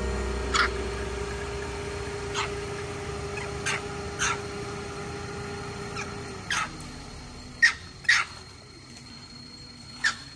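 Long-tailed macaques giving short, sharp, high squeaks, about nine scattered calls with two close together near the end. Background music fades out during the first six seconds or so.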